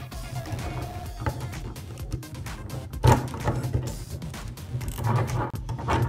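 Background music with a steady low beat, with scattered clicks and knocks of a plastic toy figure being fitted onto a plastic toy motorcycle; the loudest knock comes about three seconds in.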